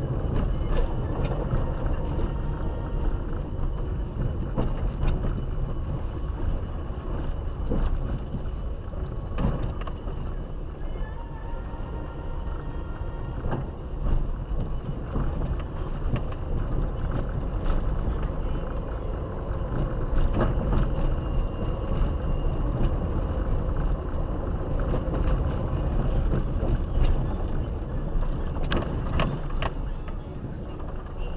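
A car driving slowly over a rough, potholed road, heard from inside the cabin: a steady low rumble of engine and tyres with scattered knocks and rattles as the suspension and body take the bumps. A faint steady high whine runs underneath.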